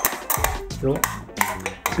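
Scissors snipping through the thin aluminium wall of an empty drink can: a quick run of sharp metallic snips and clicks.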